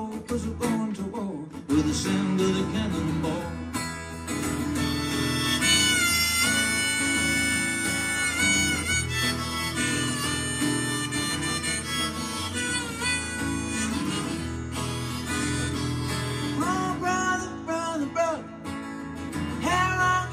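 Harmonica solo played in a neck rack over a strummed acoustic guitar, with long held notes that bend at their ends.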